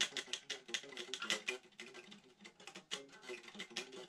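Electric guitar played in a quick run of picked notes, each with a sharp pick attack, a demonstration of fast playing.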